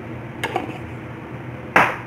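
Two knocks from things being handled while cooking: a light click about half a second in, then a short, sharp knock near the end.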